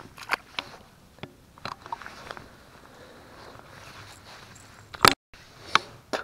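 Scattered light clicks and knocks of handling, several in the first two and a half seconds and the sharpest about five seconds in, followed by a moment of total silence.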